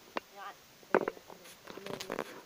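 Handling knocks and clicks as a phone camera is moved and set on a small plastic mini tripod, the loudest knock about a second in. A girl makes short voice sounds in between.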